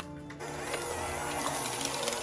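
Electric hand mixer running steadily with its beaters in a thick chocolate cream-cheese batter, beating in a freshly added egg.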